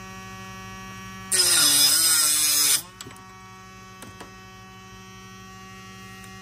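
Arrow saw motor running with a steady hum. About a second in, the saw cuts through the carbon arrow shaft for about a second and a half: a loud grinding hiss, with the motor's pitch dipping under the load. It then runs on unloaded.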